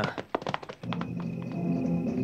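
A few short thuds of horses' hooves, then orchestral film-score music sets in about a second in with sustained low notes.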